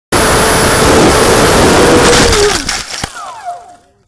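Loud rushing air and electric motor whine recorded by a camera on board an RC foam jet. About two and a half seconds in, the motor note drops and the noise falls away. A sharp knock about three seconds in is the crash into the ground, followed by falling whines as the motor winds down.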